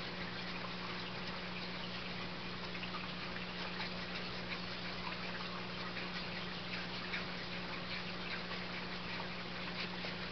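Steady hiss with a low, even hum and no distinct events: room tone and recording noise.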